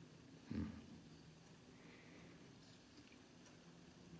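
Near silence: room tone, with one brief low sound about half a second in.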